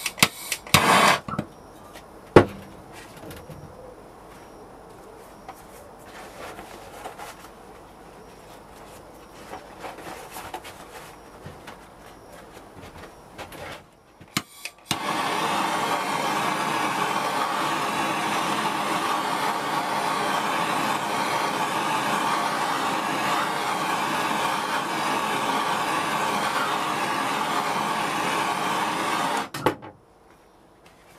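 Handheld gas torch running steadily with a blue flame, starting about halfway in and cutting off suddenly just before the end. A few sharp knocks of metal tools being handled in the first couple of seconds.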